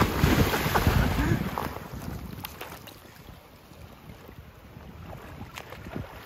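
A person jumping into a river pool: a loud splash of water that churns for about two seconds. It then dies away to quiet sloshing as he floats in the water.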